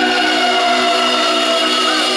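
Live rock band music: a loud, held keyboard chord with slow gliding lead notes above it.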